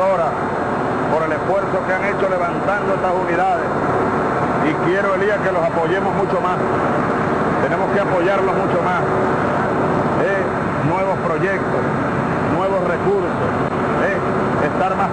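People talking over the steady hum of a running vehicle engine.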